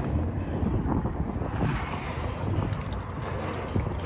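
Wind rumbling on the microphone, a steady low noise, with faint scattered ticks and scuffs of movement.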